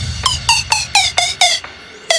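Electronic dance track in a breakdown: a squeaky synth plays short notes that each drop in pitch, about four a second, with the bass and kick dropped out. The notes pause briefly near the end.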